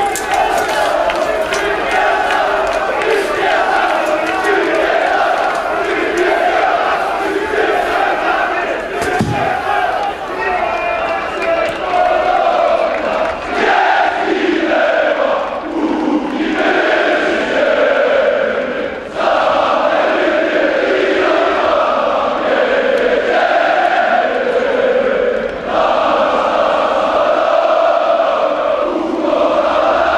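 Football crowd chanting and singing together: a loud, sustained mass chorus of fans, in long phrases with brief breaks between them.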